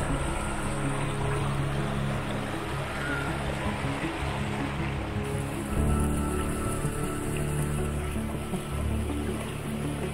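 Background music: a slow ambient piece of held low chords, which change to a new chord about six seconds in.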